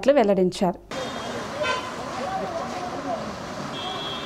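A voice-over ends about a second in, giving way to outdoor street noise: a steady hiss with faint voices shouting, a short horn toot about halfway through, and a high steady beep starting near the end.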